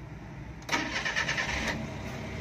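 Suzuki Carry DA63T kei truck's 660 cc K6A three-cylinder engine being started: the starter cranks and the engine catches about two-thirds of a second in, then keeps running.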